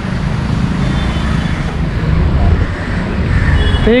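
Steady low rumble of city traffic in the background.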